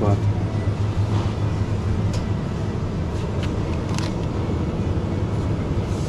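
Steady low mechanical hum of supermarket refrigeration beside an open chiller case, with a few light rustles of plastic packaging being handled.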